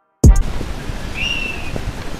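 After a moment of silence, outdoor sound cuts in with a loud thump, then steady wind noise on the microphone. Through it come a few soft thuds of a football being touched on artificial turf and a brief high chirp.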